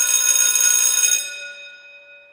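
A bell ringing loudly and steadily, then dying away near the end.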